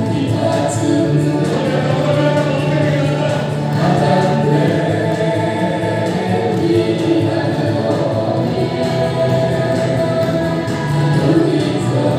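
A man and a woman singing a duet into microphones, amplified through a sound system, over sustained musical accompaniment. The singing and music run on without a break.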